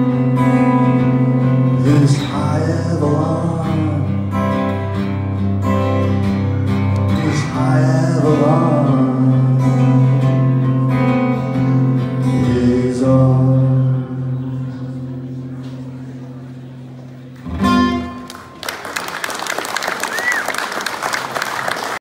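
Acoustic guitar strummed with singing over it, the last chord left ringing and fading out over a few seconds. A final strum near the end, then audience applause.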